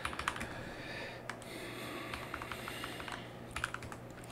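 Computer keyboard being typed on: a quick run of keystrokes at the start and another short run near the end, as terminal commands are entered.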